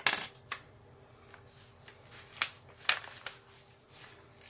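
About half a dozen light, sharp clicks and taps of small hard objects on a tabletop: metal tweezers being set down and the plastic release film of a diamond painting canvas being handled. The loudest comes at the very start, with two more strong ones in the second half.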